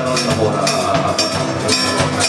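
Instrumental passage of a live song: acoustic guitar and electric bass playing, with a light, steady beat about twice a second.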